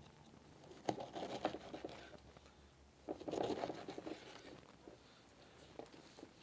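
Kitchen knife cutting fresh pineapple on a wooden cutting board: a few faint knocks of the blade against the board, then a longer crunching cut through the fruit about three seconds in.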